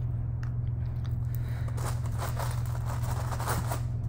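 Graham crackers being picked up and handled, a faint run of small crackles and crunches, over a steady low hum.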